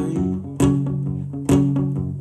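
Acoustic guitar being strummed, with two strong strums about a second apart.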